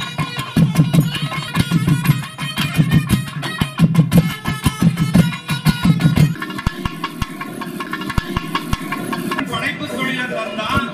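Traditional South Indian temple music: a sustained pitched melody over fast drum beats. The drumming drops out about six seconds in while the melody carries on.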